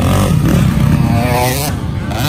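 Motocross dirt bike engine revving hard close by, its pitch rising and falling with the throttle as it goes over a jump, with other bikes running further off.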